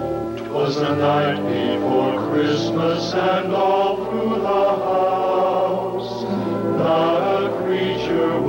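Soundtrack music: a group of voices singing together in a soft, choir-like style.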